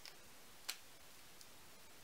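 Near silence: room tone broken by a few small clicks, a faint one at the start and a sharper one just under a second in.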